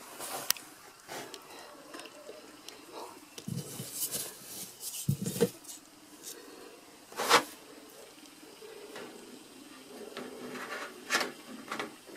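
Hands rummaging in wood-shaving nest bedding and picking up hens' eggs: faint rustling with scattered soft knocks and clicks, the sharpest about seven seconds in. Near the end, eggs are set into a wire egg basket.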